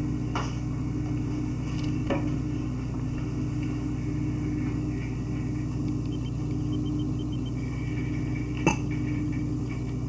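Steady low hum of a running appliance in a small kitchen, with three light knocks: one near the start, one about two seconds in and one near the end.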